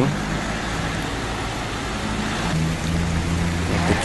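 A vehicle engine running close by, a low steady hum that grows louder about two and a half seconds in, over the even hiss of a fountain's splashing water.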